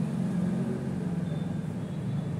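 A steady low rumble, with a faint thin high whine coming in about a second in.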